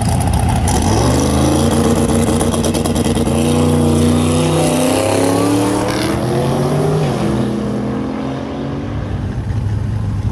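Dodge Charger Hellcat Redeye's supercharged 6.2-litre HEMI V8 revving at a drag strip, its pitch climbing for a few seconds, climbing again briefly, then dropping about seven seconds in and settling lower.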